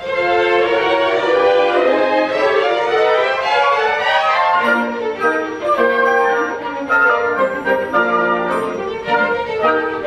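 Symphony orchestra playing live, the violins and other strings leading with long held notes, then shorter separated notes about halfway through.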